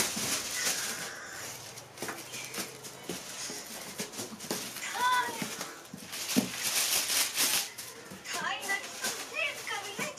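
Crinkling and rustling of plastic kite sheets and metallic tinsel fringe being handled and pressed flat, with voices, including children's, in the background.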